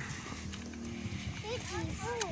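Indistinct voices murmuring in the background, with a few short, high-pitched rising-and-falling vocal sounds in the last half second.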